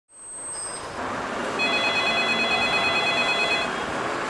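Telephone ringing: one long electronic trill of several high tones lasting about two seconds, over a steady hiss of background noise.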